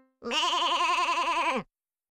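A single long farm-animal bleat with a fast, even quaver, stopping after about a second and a half.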